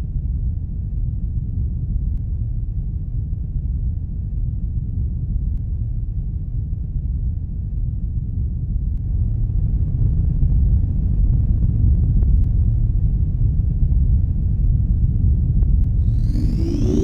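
Deep, steady rumble of a starship's engines as a sci-fi sound effect, swelling slightly louder about ten seconds in.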